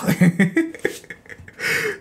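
A man's short breathy laugh: a few brief voiced chuckles at the start, then a breathy exhale near the end.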